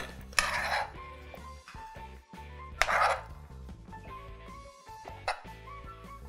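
A metal spoon scraping and clinking against a small glass dessert cup as diced avocado is spooned into it, in three short strokes, over soft background music.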